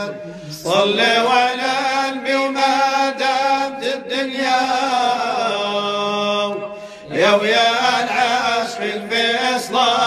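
Devotional Islamic chant praising the Prophet Muhammad: a voice singing long, ornamented phrases over a steady drone. A brief pause about seven seconds in before the next phrase begins.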